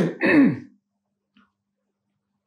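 A man clearing his throat in a short rough burst with a falling pitch at its end, within the first second.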